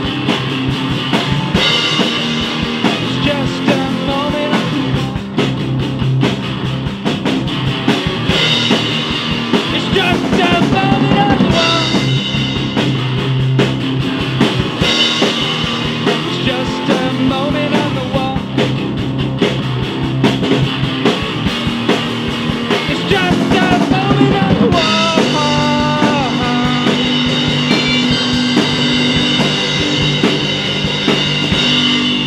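A rock band of guitar, bass and drum kit playing a song together, loud and continuous throughout.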